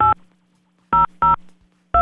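Telephone keypad dialing: short touch-tone (DTMF) key beeps as a number is keyed in slowly and unevenly, one at the start, two close together about a second in, and another at the end, with a faint line hum between them.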